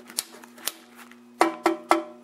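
Rocker switch on the metal case of a vintage TV antenna booster being clicked back and forth: two light clicks, then three sharper clicks about a quarter second apart, each leaving the metal box ringing briefly.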